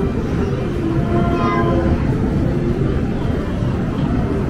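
Steady, loud din of a busy arcade: a low rumble of machines and people, with short electronic game tones scattered through it.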